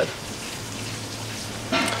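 Steady hissing background noise with a low, even hum underneath, with no distinct knocks or clinks.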